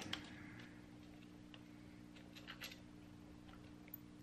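Faint, scattered small metallic ticks from a steel cam-cap bolt being handled and turned by hand into an aluminium camshaft cap, over a steady low hum.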